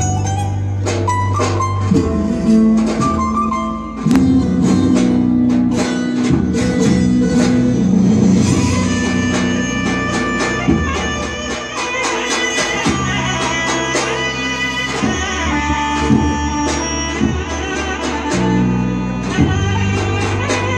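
Turkish folk dance music played for an efe troupe's dance: string instruments carry a melody over drum beats.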